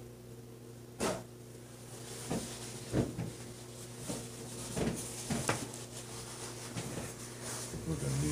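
A handful of sharp knocks and clatters, about six, spread unevenly through the stretch as someone handles things at a table, over a steady low hum.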